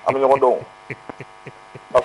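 A single spoken word, then a steady electrical mains hum with a few faint clicks under it.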